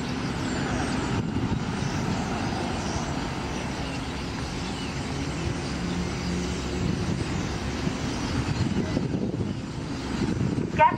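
Steady low traffic rumble, with the high-pitched squealing chatter of a huge flock of small birds wheeling overhead mixed in above it.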